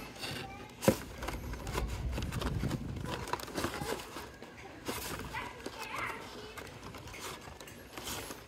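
Plastic blister-packed toy cars on cardboard cards being handled and shuffled inside a cardboard case: crinkling plastic and cardboard rustling with scattered clicks, the sharpest about a second in.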